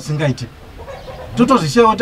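A man speaking, with a short pause in the middle.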